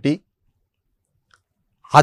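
A man's voice speaking to camera, ending a phrase just after the start and starting the next near the end, with dead silence between.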